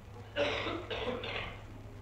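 Someone clearing their throat once, about a second long, over the steady low hum of an old courtroom recording.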